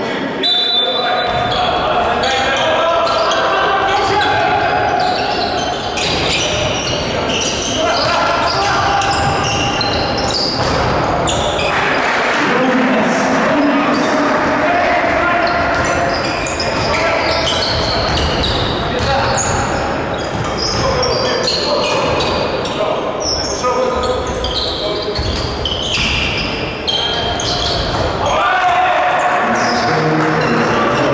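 Live basketball game in a gymnasium: the ball bouncing on the hardwood floor, with voices throughout.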